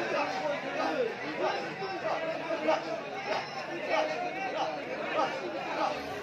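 Many men's voices talking and calling out at once: the chatter of a large crowd of spectators.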